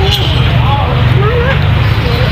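People talking faintly in the background over a steady low rumble.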